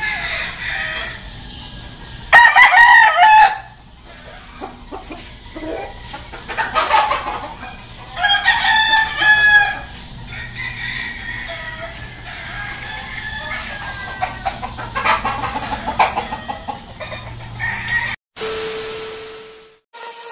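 Game roosters crowing several times over one another, the loudest crow about two seconds in, with other crows following through the middle. The sound cuts off shortly before the end.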